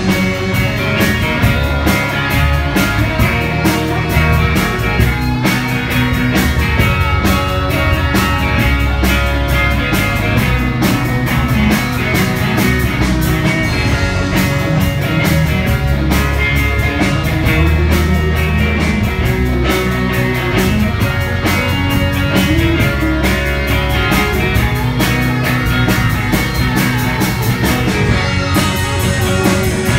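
Live rock band playing loudly through amplifiers: electric guitars over a steady drum-kit beat.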